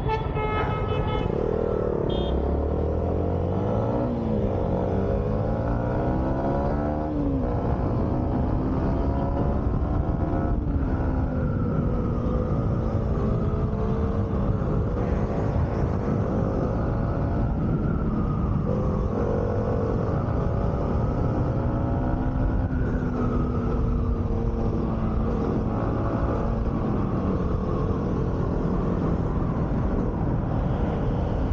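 Motorcycle engine accelerating, its pitch climbing several times through gear changes over the first seven seconds or so, then holding a steady note while cruising at about 60 km/h, over a steady rush of road noise.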